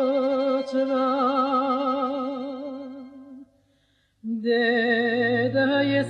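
A woman singing a Bulgarian folk song, holding a long note with a wide, even vibrato that fades away about three and a half seconds in. After a brief silence she starts a new phrase on a lower note, and a low steady drone comes in beneath her voice.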